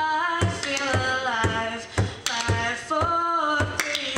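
A woman singing a sustained melody with vibrato over a guitar strummed in a steady rhythm.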